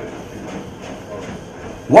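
Motorized treadmill running, its belt and motor turning under the footfalls of a man jogging on it, a steady mechanical noise.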